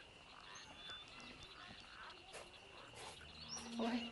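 Quiet outdoor ambience: a faint, steady high-pitched drone with a few soft clicks, and a brief low tone near the end.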